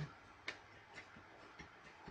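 A few faint, sparse clicks of tarot cards being handled and shuffled, over near silence.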